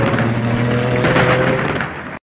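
Channel intro sound effect: a loud, dense rushing noise over a steady low drone, dropping a little near the end.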